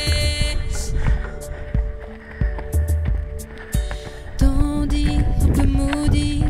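Soundtrack music: a sung line ends just after the start, then a quieter instrumental stretch, and a held note comes in about four and a half seconds in.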